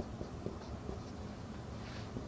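Marker pen writing on a whiteboard: a series of short, faint squeaks and taps from the pen strokes over steady background noise.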